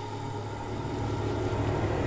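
A low rumbling drone from a film soundtrack, slowly swelling in loudness, with faint steady higher tones above it.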